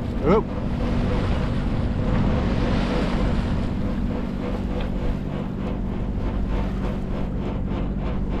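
Wind buffeting the microphone over the rush of water past a sailboat's hull, with a low steady hum underneath.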